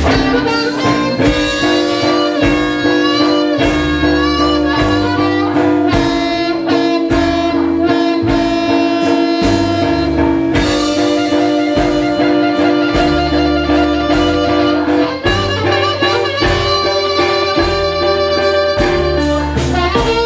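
Blues band playing live in an instrumental passage: guitar over bass and a steady beat, with a long held note underneath for about the first fifteen seconds.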